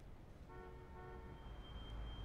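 Faint car horn sounding for about a second, with a thin high tone lingering after it over a low background hum.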